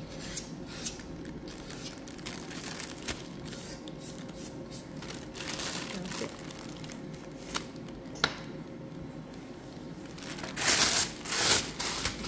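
Thin plastic piping bag crinkling and rustling as it is handled while being filled with soft plaster-and-glue paste, with scattered small clicks; the loudest crinkling comes about a second before the end.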